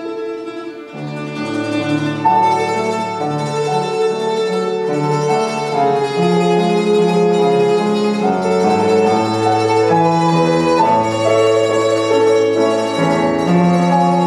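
Ten-string mandoloncello (liuto moderno model) and Steinway grand piano playing a duet; the music thins briefly about a second in, then grows fuller and louder from about two seconds on.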